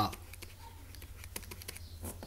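Faint, irregular taps and clicks of a pen stylus on a writing tablet as a word is handwritten, over a low steady hum.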